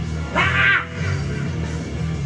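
Rock music playing with steady bass, and a single short, loud shouted yell from a male singer into a microphone about half a second in.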